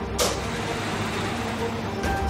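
A sudden whoosh just after the start, then a steady rush of passing street traffic.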